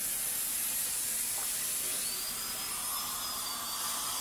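High-speed dental drill and suction running in a patient's mouth while a cavity is drilled out: a steady hiss, with a thin high whine joining about halfway in.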